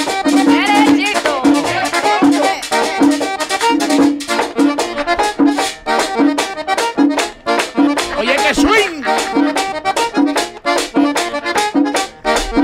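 Merengue típico music: accordion lines over a fast, even percussion beat, with a low note repeating about twice a second.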